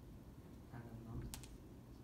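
Quiet room with a single sharp click a little past halfway, against faint low murmuring.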